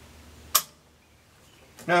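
A single sharp, short click about half a second in: a Mosin Nagant's firing pin falling on a 7.62x54R subsonic round that does not fire, a light strike that the owner puts down to a weakened firing pin spring.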